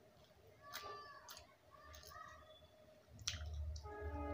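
Scattered wet mouth clicks and lip smacks of someone chewing a soft, syrupy kala jamun, with two short pitched cries about one and two seconds in. A louder click and a low rumble come in just after three seconds.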